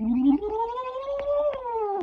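A young man's voice making one long wordless wail that slides up in pitch and then back down.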